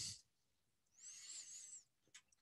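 Near silence, broken about a second in by a faint hiss with a thin wavering whistle that lasts under a second: the lecturer breathing through his nose.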